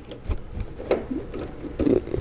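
Scattered light metallic clicks and taps from a long Torx driver working the last bolt out of the turbo diverter valve on a BMW N20 engine, with one sharper click about a second in.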